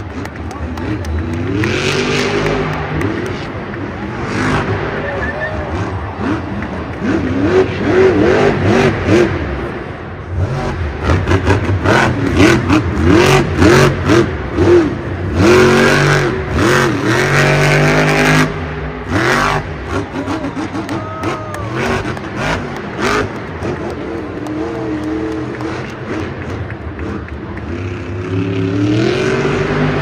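Grave Digger monster truck's supercharged V8 revving hard, its pitch climbing and falling again and again as it is driven at the dirt jumps, with sharp cracks through its loudest stretch in the middle.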